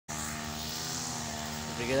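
A steady mechanical hum, like a small engine running, holding one unchanging pitch. A man's voice starts over it near the end.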